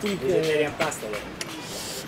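Speech: a man talking, his voice fading about a second in.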